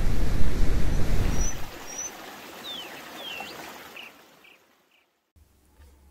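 A loud rushing noise, heavy in the bass, dies away over the first two seconds into a faint hiss, over which come a few short bird chirps and quick downward-sweeping calls; everything cuts off abruptly about five seconds in.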